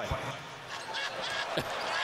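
A basketball bouncing on the hardwood court, with thuds about a second and a half apart, over the steady hubbub of an arena.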